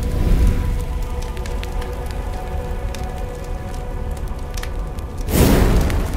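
Cinematic trailer score: a low rumbling drone with sustained held tones and scattered crackles. A loud rushing swell comes in about five seconds in.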